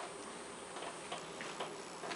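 Faint, irregular light clicks and taps over quiet hall background, small stage noises from actors moving about the stage.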